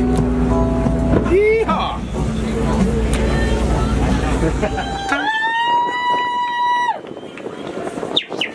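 Wind buffeting the microphone aboard a moving boat, over voices on deck. About five seconds in the rumble drops away and a single steady high tone sounds for nearly two seconds.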